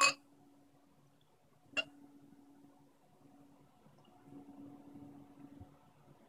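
Dark stout being poured from a small glass bottle into a tilted pint glass, faint, growing a little louder in the second half. A short sharp sound at the very start.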